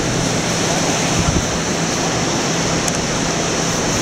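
Steady wash of surf breaking on a beach, mixed with wind on the microphone, over a low steady hum.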